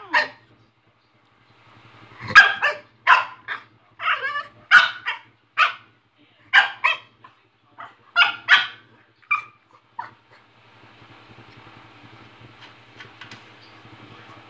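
French bulldog barking in short, sharp bursts, often two or three close together, then falling silent about ten seconds in.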